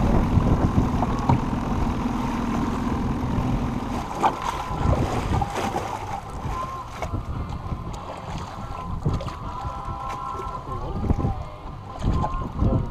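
Wind buffeting the microphone over choppy lake water splashing along the side of a small boat, with a steady low hum that stops about four seconds in.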